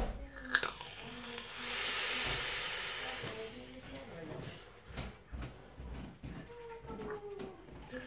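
A drag on a drip-fed vape and the vapour blown out: a breathy rush of air that swells about a second and a half in and lasts over a second before fading.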